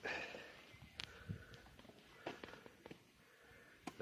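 Quiet outdoor background with a few faint, short clicks.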